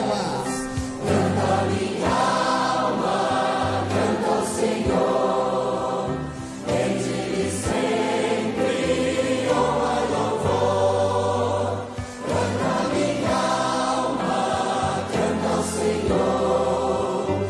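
Choir and congregation singing a slow worship hymn in long, held phrases over instrumental accompaniment with steady bass notes, the phrases separated by short breaths.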